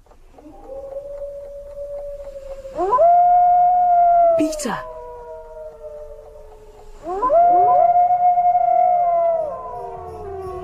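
Wolves howling: several long, overlapping howls, the first starting about half a second in and louder ones near three seconds and again near seven seconds, each sliding down in pitch as it fades. A brief sharp swish cuts through about four and a half seconds in.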